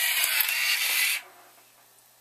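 A CTD-200 series card dispenser's motorized rollers feeding a card out of the exit slot on a dispense command. The steady mechanical run lasts about a second and a half and stops sharply a little after a second in.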